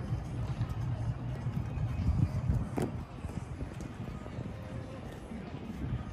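Open-air ambience at a practice field: an uneven low rumble with one sharp click just before the middle.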